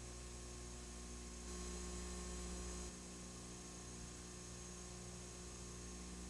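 Steady electrical mains hum with its overtones over faint hiss. It gets a little louder about a second and a half in, and the low part drops back just before the three-second mark.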